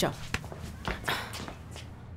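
A few footsteps and shuffling on a hard floor, after a sharply spoken word at the start.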